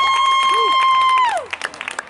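A spectator's high-pitched cheering shout held steady for over a second, cutting off about a second and a half in, followed by scattered hand clapping.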